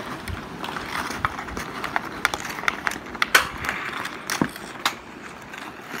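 Ice skate blades scraping on rink ice, with repeated sharp clacks of a hockey stick striking a puck and the ice; the loudest crack comes about three seconds in.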